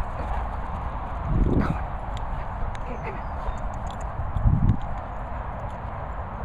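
Low rumble of wind and handling on the microphone, with soft thudding footfalls on grass. Two louder low bursts come about a second and a half and four and a half seconds in.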